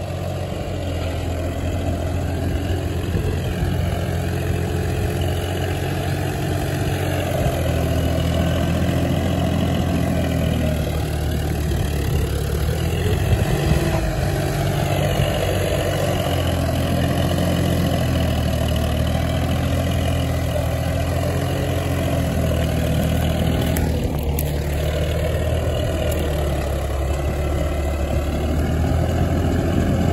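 VST Zetor 5011 tractor's three-cylinder diesel engine running steadily under load while pulling a tine cultivator through dry field soil, its pitch rising and falling slightly.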